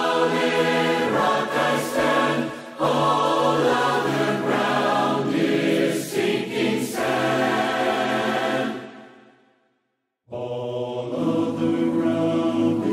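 A large choir sings unaccompanied in held chords, phrase by phrase. About nine seconds in it fades to a second of silence, then the singing starts again.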